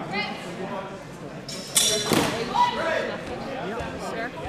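Voices echoing in a large hall, with a loud, sharp sound about halfway through.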